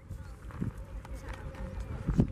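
Faint chatter of onlookers' voices over a low, uneven rumble.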